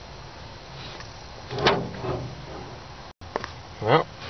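A steady low hum with one short metallic scrape about a second and a half in, as the planetary gear set is worked around inside the GM 4T40-E transmission case. The sound cuts off abruptly just after three seconds.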